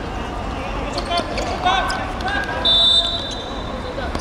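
A short, steady blast on a referee's whistle about three quarters of the way in, the loudest sound, with players' brief shouts before it on the football pitch.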